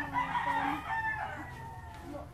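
A rooster crowing once, a single drawn-out call of nearly two seconds that fades away near the end.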